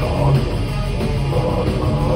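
Death metal band playing live: distorted electric guitars, bass and drum kit, loud and continuous.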